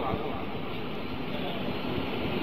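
Steady background hiss and low rumble of recording noise, with no speech.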